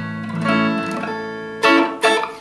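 Fender Telecaster electric guitar played clean, an A barre chord at the fifth fret ringing on, then strummed again about half a second in and once more, louder, near the end.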